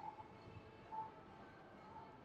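Near silence: faint room tone, with two faint short tones about a second apart.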